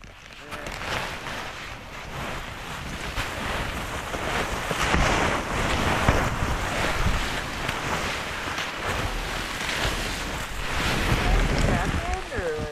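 Rumbling wind noise and snow scraping and rustling against a jostled body-mounted camera's microphone, getting louder over the first few seconds.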